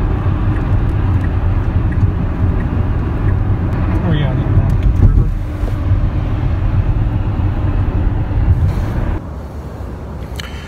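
Road and tyre noise inside a moving car's cabin: a steady low rumble. It cuts off about nine seconds in, leaving quieter outdoor air.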